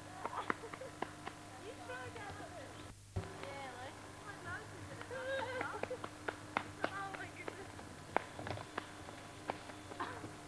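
Distant, unintelligible voices calling out, with scattered sharp clicks over a steady low hum. The sound drops out for a moment about three seconds in.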